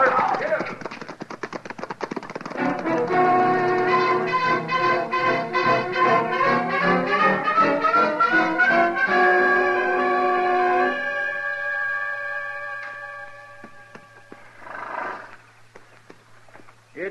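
Horses' hoofbeats at a gallop for about two seconds, then a brass orchestral music bridge with a rising line. It ends in a held chord that fades out.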